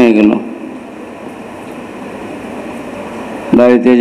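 A man's amplified speech breaks off just after the start, leaving about three seconds of steady room noise with no clear pitch before the speech resumes near the end.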